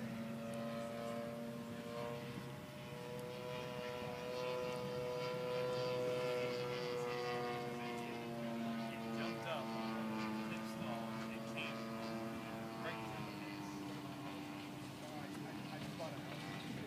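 Gasoline-engined radio-controlled Pitts Special model biplane flying overhead. Its engine note slowly rises and falls in pitch as it manoeuvres, and is loudest about six seconds in. It drops in pitch about thirteen seconds in.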